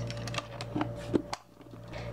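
A few light clicks and taps of makeup compacts and their box being handled, the sharpest about a second in, over a low steady hum.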